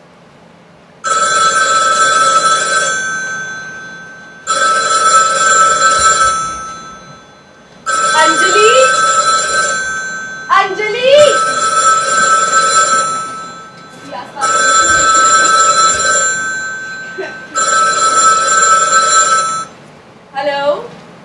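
A telephone rings six times, each ring about two seconds long with a short pause between, in a steady repeating pattern.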